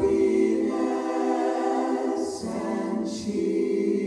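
Mixed jazz vocal ensemble singing sustained close-harmony chords a cappella, moving to a new chord about two and a half seconds in, with a short 's' hiss from the voices just before and just after the change.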